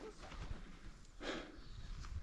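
Faint low rumble with one short breathy exhale from a man close to the microphone, about a second in.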